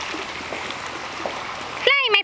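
Steady rush of running water at a turtle pond.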